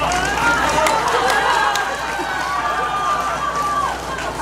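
Seated audience voices calling out and talking over one another, with a long drawn-out call about three seconds in and scattered handclaps, as applause dies down and picks up again.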